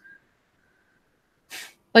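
Near silence in a paused video-call voice stream, with a faint steady high tone, then a short quiet breath about one and a half seconds in; speech resumes at the very end.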